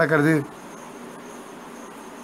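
A man's voice, in a drawn-out, sing-song delivery, stops about half a second in, leaving a pause of faint steady background hiss with a thin high whine.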